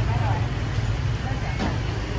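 Steady low rumble of street traffic, with voices in the background and a brief click about one and a half seconds in.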